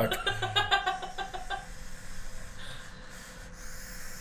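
A man laughing in quick repeated bursts that die away in the first second and a half, then a faint steady hiss as he takes a long draw on a 26650 dripper hybrid vape mod.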